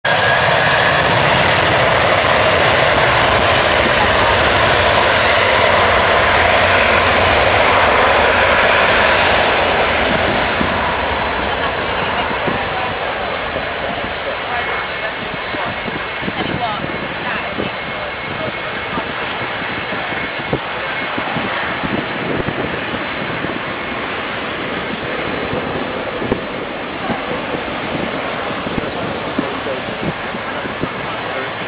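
Airbus A330 twin jet engines at takeoff power during the takeoff roll, loudest in the first ten seconds, then fading and steadier as the airliner lifts off and climbs away.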